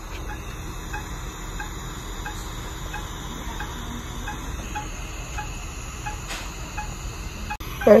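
Bedside hospital patient monitor giving short, high beeps in an even rhythm, about two a second, over a steady room hum.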